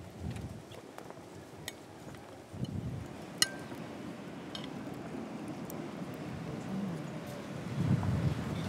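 Knives and forks clinking against china plates in a few short, sharp clicks, the loudest about three and a half seconds in, over low gusts of wind on the microphone.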